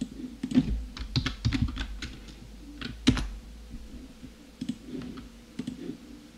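Computer keyboard being typed on in short, irregular bursts of keystrokes.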